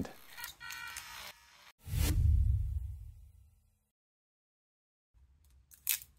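A sharp hit about two seconds in, followed by a low boom that dies away over about two seconds and then cuts to dead silence, like an edited transition effect. A few small clicks come near the end.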